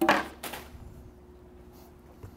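Styrofoam shipping cooler being opened and handled: two short scraping sounds about half a second apart, then quiet room tone.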